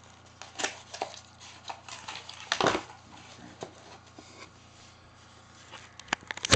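Cardboard shipping box being opened and its packing handled: a scattered run of rustles, scrapes and light knocks, the loudest about two and a half seconds in.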